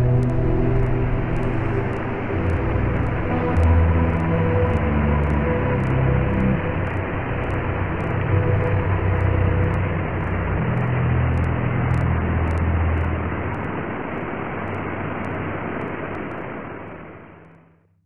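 Steady rushing water of a waterfall and rock-slide rapids, with a low rumble underneath, fading out over the last couple of seconds. Faint music tones sit under the water for the first half.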